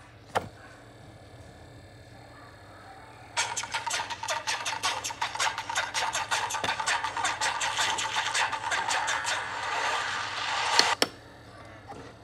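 A single click, a few quiet seconds, then a fast run of clattering percussive strikes from a DVD menu's animated intro, played through a portable DVD player's small built-in speaker. The run lasts about seven seconds and ends in two sharp hits.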